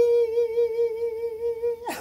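A man's voice holding one long, steady high note without vibrato. Near the end it drops away sharply.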